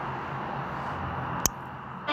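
Steady low room noise and hiss with a faint hum, broken about one and a half seconds in by a single sharp click.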